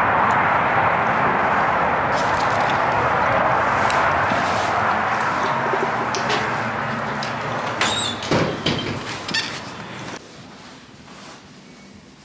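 Steady outdoor noise that slowly fades, then a building's glass entrance door opening with a cluster of clicks and knocks about eight seconds in. About ten seconds in the sound drops sharply as the door shuts, leaving quiet indoor room tone.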